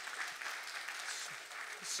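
Congregation applauding.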